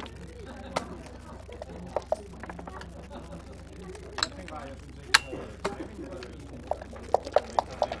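Backgammon checkers clicking on the board and against each other as they are moved and borne off. There are single sharp clicks every second or so, the loudest with a short ring about five seconds in, then a quick run of about five clicks near the end.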